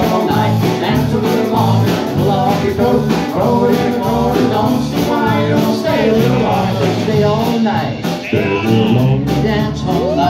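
Live country-rock band playing, with a man singing over acoustic and electric guitars, bass guitar, drums and Hammond organ.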